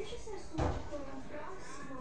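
A single dull thump about half a second in, like a door or cupboard being shut, over ongoing speech.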